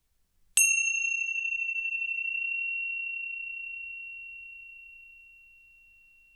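A small bell struck once about half a second in, ringing with one clear high tone that slowly fades over several seconds. It marks the end of the silent breathing meditation.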